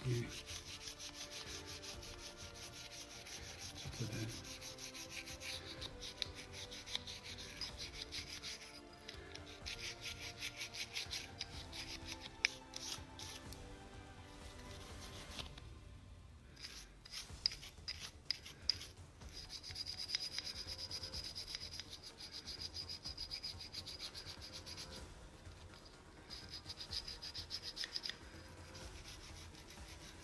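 Toothbrush bristles scrubbing the slide of a Star DKL pistol in rapid back-and-forth strokes to brush off carbon buildup, with a short pause about halfway.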